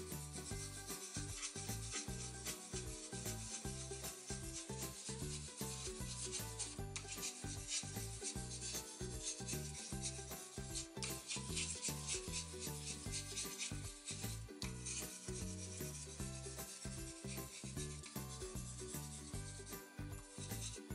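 Coloured pencil rubbing on paper in quick, repeated shading strokes, a continuous scratchy back-and-forth as a background is filled in.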